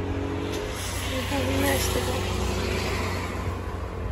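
A motor running with a steady low hum, with faint voices over it.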